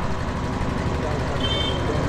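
Steady background rumble and hiss, with a brief faint high tone about one and a half seconds in.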